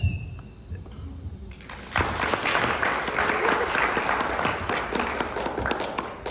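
Audience applauding, beginning about two seconds in.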